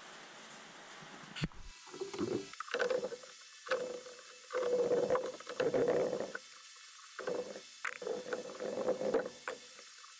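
Irregular handling noise, rustling with a few light clicks, in bursts of a second or less as hands push wires and work terminals inside a CNC mill's electrical cabinet.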